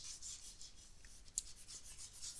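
Faint scratching of a stylus rubbed across a tablet's writing surface in short strokes, as handwriting is drawn and erased.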